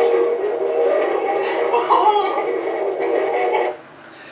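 Sound from a played-back recording, thin and radio-like, made of several held tones; it starts suddenly and cuts off abruptly shortly before the end.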